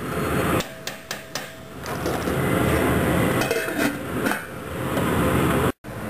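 Metal tongs knocking and scraping against the side of a stainless steel stockpot while stirring a stew, in irregular clusters of clicks and clanks.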